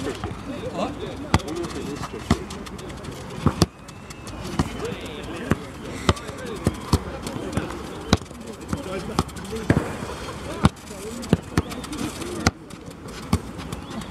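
A football being kicked back and forth on artificial turf: a string of sharp, unevenly spaced thuds of foot on ball, about one or two a second. Voices chatter in the background.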